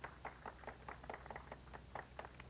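A few people clapping their hands softly, with scattered, uneven claps at about six a second.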